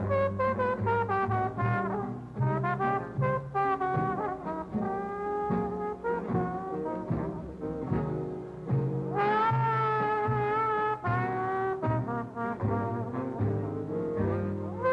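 Trombone playing a solo on a slow jazz blues, with the band accompanying underneath. The line bends and slides between notes, with one long held note about two-thirds of the way through.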